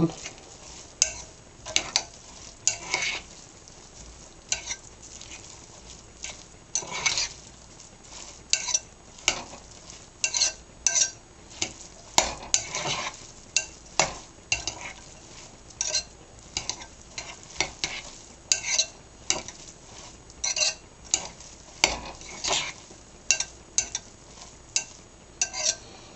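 Metal spoon stirring a moist, oil-dressed couscous salad in a glass jug. It makes a long run of short, wet scraping strokes, about one or two a second, with light clinks of the spoon against the glass.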